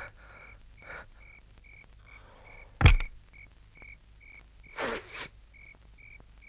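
Night-time chirping ambience: a steady rhythm of short, high chirps, about two to three a second. A single sharp thump about three seconds in is the loudest sound, with a few softer scuffs around one second and near five seconds.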